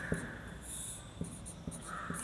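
Felt-tip marker writing on a whiteboard: a run of short high-pitched squeaks and scratches as the strokes are drawn, with a few faint taps of the tip.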